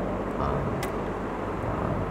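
A pause between a man's words, filled with steady low background hum and noise, and one sharp click a little before the middle.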